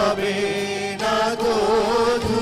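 A group of singers performing a Bengali song with musical accompaniment, holding long wavering notes.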